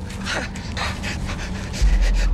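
Chimpanzee panting in quick breathy strokes, about three or four a second, the excited pant of an ape at play. Just before the end a loud, deep low rumble comes in.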